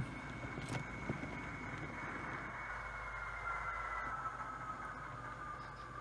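HO scale model train running slowly along the track: a faint, steady motor whine that slides a little lower in pitch in the second half, over the hum of the rolling wheels, with a couple of light clicks about a second in.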